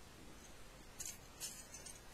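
Small craft cutters and their packaging being handled: a few short, crisp rustling clicks about a second and a second and a half in, with a smaller one near the end, all faint.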